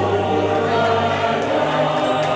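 Choral music: a choir singing sustained notes together.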